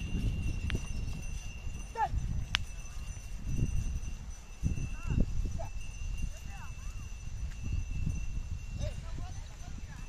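A pair of Hallikar bullocks drawing a wooden harrow over dry, tilled soil: a rough low rumble of the dragging harrow and hooves, with a few short bird chirps and a faint steady high tone.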